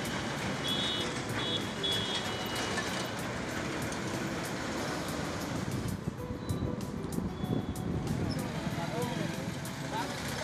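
Street traffic noise with indistinct voices in the background, and three short high beeps about a second in.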